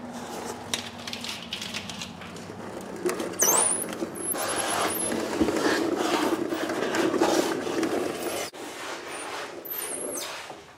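Irregular metal clunks and scrapes as a removed 231 transfer case is handled and lowered to the floor, with the rustle of someone shifting underneath the vehicle.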